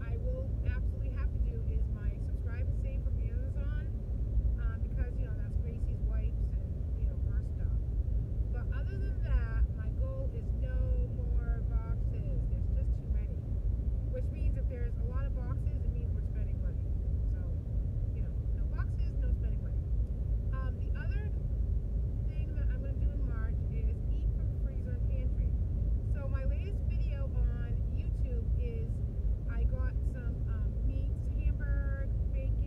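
Steady road and engine noise inside a moving car's cabin, with a woman's voice heard on and off over it.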